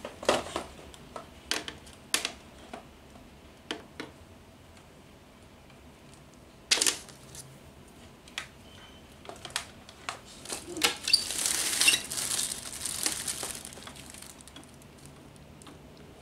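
Scattered clicks and knocks of cables and a power adapter being handled and plugged in, with a sharp click about seven seconds in. Plastic wrapping crinkles for a couple of seconds later on.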